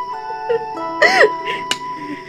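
Soft melodic drama score of held notes that change every half second or so. About a second in, a woman's sobbing cry rises and falls over it.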